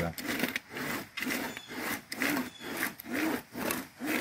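Homemade wooden-framed buck saw cutting across the top of a log, scoring a groove for splitting, in steady rhythmic strokes about two a second.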